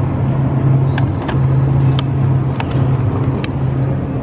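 Shopping cart being pushed along a grocery store aisle: a steady low rolling hum with a few brief breaks, and scattered clicks and rattles.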